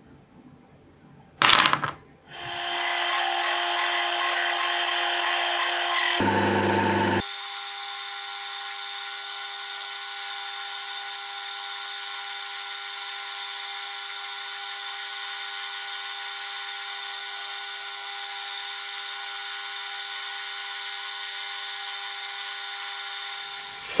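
Small metal lathe spinning up and running with a steady whine while a twist drill bores into the head of a stainless steel bolt turning in the chuck. A short loud noise comes about a second and a half in, and the sound changes about six and seven seconds in, settling into a quieter, even whine.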